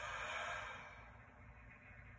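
A man's long, audible breath out through the mouth, like a sigh, swelling and then fading within about a second and a half.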